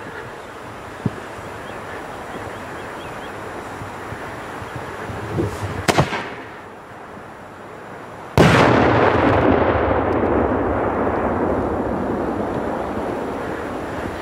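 4-inch cylinder salute shell set off on the ground. A few seconds of hissing with a sharp pop about six seconds in are followed, a little past eight seconds, by one sudden very loud blast. Its rumble then fades slowly over the last five seconds.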